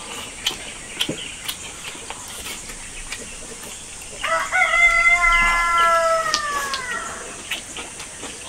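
A rooster crows once about four seconds in, a long held call that sags in pitch at the end. Light clicks of chopsticks against rice bowls come and go around it.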